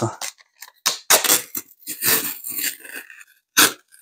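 A paper shipping label and its tape being peeled and torn off a cardboard box, in a series of short, irregular rips.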